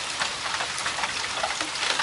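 Steady rain falling, with rainwater running out of a PVC first-flush pipe through a funnel into a plastic gallon jug.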